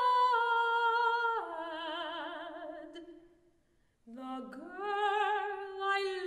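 Solo soprano singing unaccompanied, with vibrato: a long held note steps down about a second and a half in and fades away to a brief silence past the middle. A new phrase then starts low and rises.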